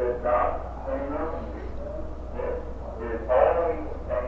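Outdoor tornado warning siren sounding during its routine weekly test, its wail coming and going.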